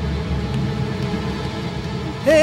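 A steady low rumble with no distinct events.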